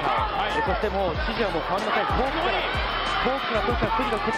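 A man talking excitedly and fast, high in pitch, in words that are not English, with several short dull thuds underneath.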